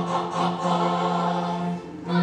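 Opera chorus singing live, holding a long low note for over a second that breaks off just before the end.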